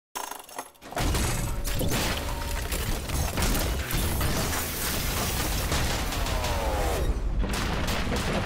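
Sci-fi robot sound effects begin about a second in: dense mechanical clanking and grinding over a deep rumble, with a falling whine near the end.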